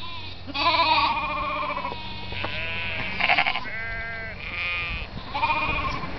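Sheep bleating: several separate bleats of differing pitch, one about a second in and then several more in quick succession through the second half.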